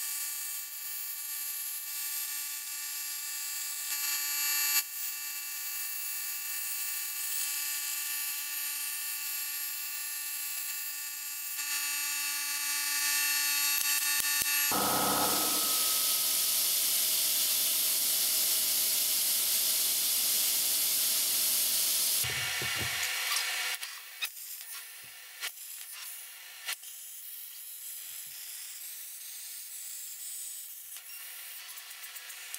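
CNC plasma cutting table cutting steel plate: the plasma arc hisses over a steady whine of several tones for about the first fifteen seconds. Then a louder, even rushing hiss runs for about seven seconds, followed by a quieter hiss with scattered clicks and crackles.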